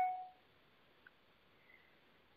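Near silence on a phone conference line: faint line hiss, opened by a brief steady tone and broken by a tiny click about a second in.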